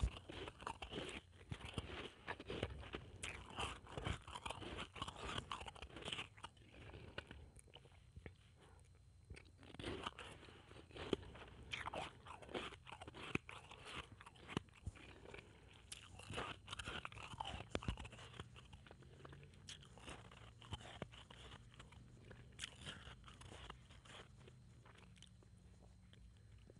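Blended ice crunched and chewed in the mouth: irregular crisp crunches, with a lull about eight seconds in, thinning out near the end.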